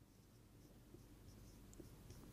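Faint taps and squeaks of a marker writing on a whiteboard, a few small ticks starting about a second in, over near-silent room tone.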